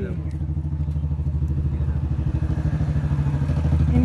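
An engine running steadily nearby: a low, rapid throb that grows louder toward the end.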